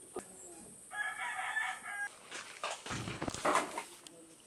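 A rooster crows once, a steady call of about a second starting about a second in. It comes after a single knock on a wooden door and is followed by scuffling noise near the end.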